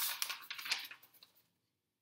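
Pages of a thin stapled paperback picture book being flipped by hand: a crisp paper rustle with a few sharp crackles that dies away about a second and a half in.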